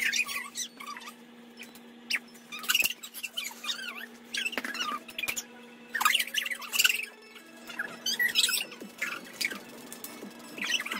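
Children squealing and laughing in short, high-pitched bursts every second or so, over a steady low hum.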